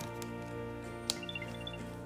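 Soft background music with steady held tones. A single light click about a second in, as the plastic battery tab is pulled out of an Apple AirTag.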